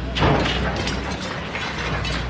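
Volvo tracked excavator demolishing a concrete apartment building: its diesel engine runs with a steady low drone while masonry crunches and rubble clatters down. There are several sharp crashes, the loudest about a quarter second in.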